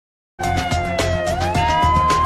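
News-channel intro music starting suddenly after a brief silence: a beat with a siren-like synth tone that dips, then glides up about halfway through and holds.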